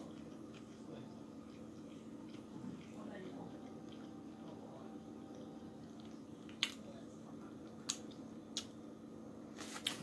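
Faint chewing of a mouthful of burger over a steady low hum, with three sharp clicks near the end.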